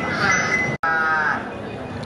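Young female Thai swamp buffalo calling: a short, slightly falling moo about a second in, with another call just before it, split by a momentary break in the sound.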